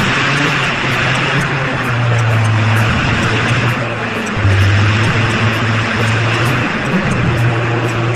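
Bus driving sound effect: a steady engine drone with road noise, its pitch stepping up and down a few times, under faint quick ticks of a stopwatch timer.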